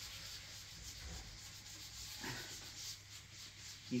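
An applicator pad rubbing oil finish into a spalted beech board in circular strokes, a soft, steady scrubbing hiss of pad on wood.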